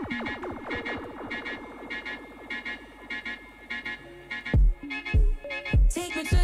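Electronic background music: a build-up of quick, repeated sweeping synth tones over steady high notes, then a heavy kick drum comes in about four and a half seconds in, beating about every 0.6 seconds.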